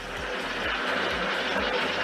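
A steady, even hiss with no pitch, with a faint low pulsing underneath.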